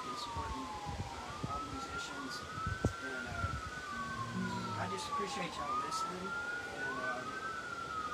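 Emergency-vehicle siren wailing. Its pitch rises quickly and then falls slowly, over and over every two to three seconds, with two wails overlapping and out of step.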